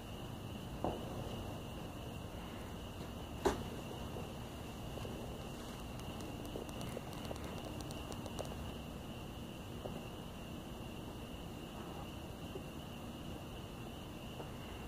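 Quiet background: a steady hiss with a faint steady high tone, broken by two short knocks about one second and three and a half seconds in, and a few faint ticks near the middle.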